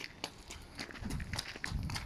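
Footsteps crunching on loose gravel, a run of irregular steps.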